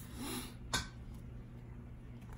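Quiet handling of a thick paper book as it is opened and its pages turned, with one short sharp paper flick a little under a second in, over a low steady hum.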